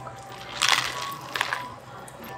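People drinking from plastic refillable resort mugs, with two short drinking noises, the first about half a second in and the second about a second and a half in.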